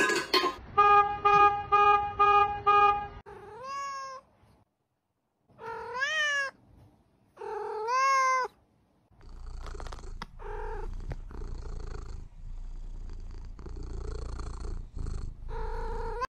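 A tabby cat meows three times, each call rising and then falling in pitch, then purrs with a few short chirps. Before the meows there is a quick run of evenly repeated beeping tones.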